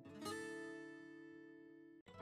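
Background music on acoustic guitar: a single chord strummed about a quarter second in, left to ring and fade, with a brief cut-out at the very end.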